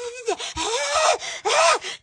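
A woman's voice making breathy, drawn-out gasps and wordless exclamations, two or three in a row, the pitch swooping up and down.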